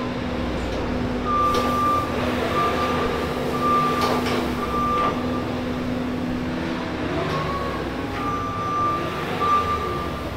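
Loader tractor engine running steadily while its backup alarm beeps about once a second, in a run of four beeps and then two more near the end, as the machine reverses.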